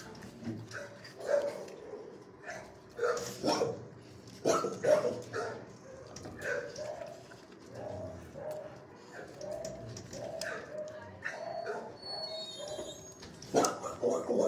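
Dogs in shelter kennels barking, a run of short barks that are loudest in the first five seconds and again near the end, with softer, shorter yips in between.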